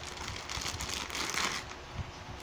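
Hands handling and fitting a metal threaded stand adapter onto a microphone's mount: rustling and scraping handling noise with small clicks, a little louder about one and a half seconds in.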